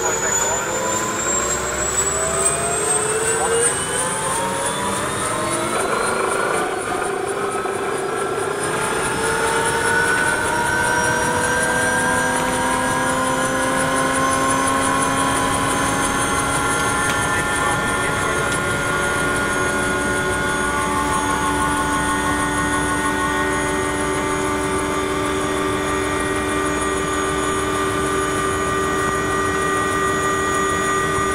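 Bell 204B Huey's Lycoming T53 turboshaft and main rotor spooling up after light-off, heard from inside the cockpit. A high whine rises for the first few seconds and then holds level. Lower tones climb and settle into a steady run over about the first fifteen seconds as the rotor comes up to speed.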